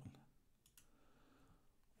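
Near silence with two faint computer-mouse clicks close together, less than a second in.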